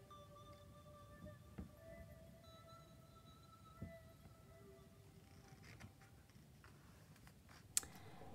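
Very faint, soft background music of slow held notes. Near the end, a short rustle of a book page being turned.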